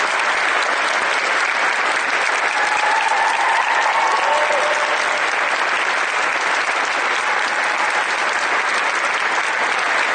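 Audience applauding steadily in a large church, with a faint voice briefly heard over the clapping about three to four seconds in.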